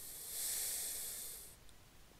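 A long breath close to the microphone, heard as a steady high hiss that swells and then stops abruptly about a second and a half in.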